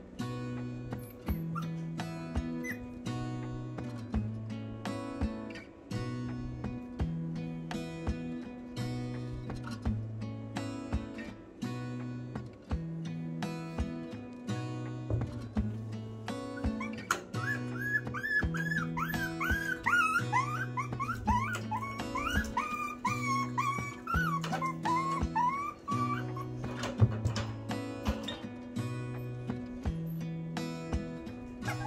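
Acoustic guitar background music with a steady repeating bass pattern. From about the middle, a Chihuahua whimpers and whines over it in a string of short, high, rising-and-falling cries lasting several seconds.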